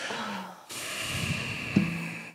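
A person breathing out hard into a close microphone: a long hissy exhale, with a short low hum from the voice near the end.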